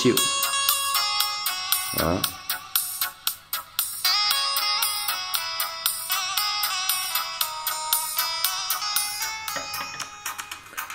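Music played through a pair of Dali M8 silk-dome tweeters with neodymium magnets. Only the upper notes and regular percussion ticks come through, with almost no bass, giving a thin, bright sound.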